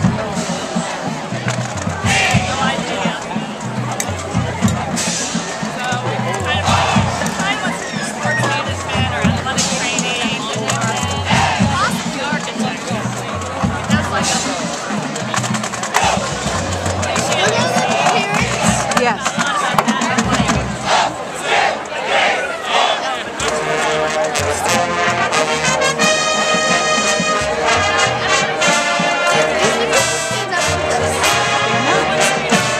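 Stadium crowd chatter and noise, then about three-quarters of the way in a high school marching band's brass section starts playing held chords.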